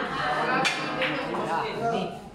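Two sharp clacks of pool balls during a shot, a loud one and a second about a third of a second later: cue on cue ball and ball striking ball. Chatter from the crowd goes on underneath.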